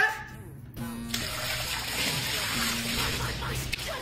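Ketchup squirted from a bottle and splattering onto a tabletop, a steady wet spray starting about a second in, with faint music underneath.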